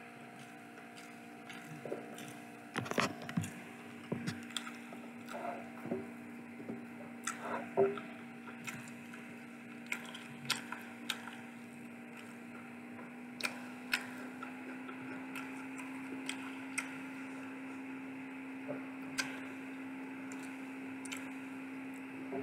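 Close-up chewing of a chicken burger: scattered wet mouth clicks and crackles, densest in the first half, with soft bun pulled apart by hand. A steady low hum runs underneath and grows a little louder about two-thirds of the way in.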